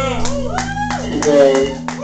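Live electronic music: swooping, warbling synthesizer tones sliding up and down over a steady drone, with a few sharp clicks. The deepest part of the drone drops out a little past halfway through.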